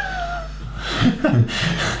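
Men's voices chuckling and laughing, starting with a short falling vocal hum and followed by bursts of laughter about a second in.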